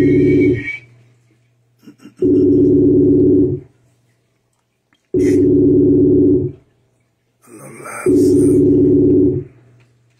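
Telephone ringback tone heard over speakerphone while a call waits to be answered: four identical low steady tones of about a second and a half each, repeating about every three seconds.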